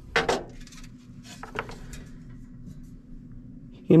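Sheet-metal fan plate with its blower wheel clinking and clattering as it is handled and set down, with a sharp clink just after the start and a few lighter knocks about a second and a half in.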